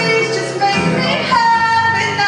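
A woman singing a song while strumming an acoustic guitar, holding one long note through the second half.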